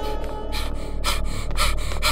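Short, sharp breathy gasps, about two a second and growing louder, over a low rumbling drone.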